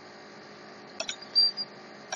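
Steady mains hum of the recording setup, with a sharp computer-mouse click about a second in and a brief high squeak just after it.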